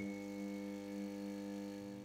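Faint sustained electronic tone, one steady pitch with a stack of overtones, held for about two seconds and stopping near the end: a transition sound effect for an animated segment title.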